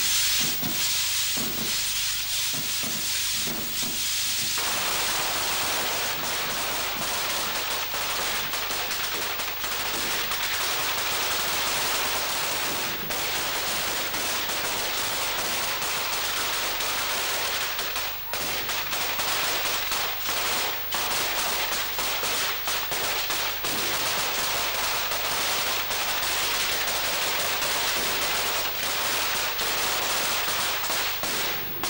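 A traca (string of firecrackers) and rockets going off in a fast, unbroken run of bangs, like machine-gun fire, getting fuller from about four seconds in.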